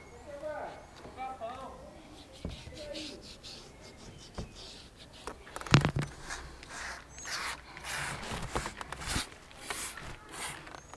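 Hand trigger spray bottle squirting a quick series of short sprays onto a van's door glass, after a single sharp knock about halfway through.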